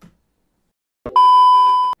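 A loud, steady electronic beep tone, high and pure with faint overtones, starting about a second in and lasting just under a second before cutting off suddenly; an edited-in sound effect.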